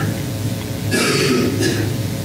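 A steady low electrical hum through the microphone and sound system. A short hiss comes about a second in, and a fainter one just after.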